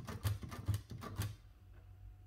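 Olivetti Lettera 22 portable typewriter's backspace key pressed repeatedly, each press a sharp mechanical clack as the carriage steps back one space. There are about six clacks, roughly four or five a second, stopping about a second and a half in.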